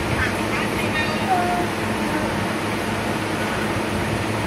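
Steady whir of a room fan running throughout, with a young child's brief voice sounds in the first second or two.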